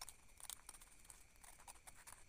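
Scissors cutting a paper sewing pattern, a few faint, short snips.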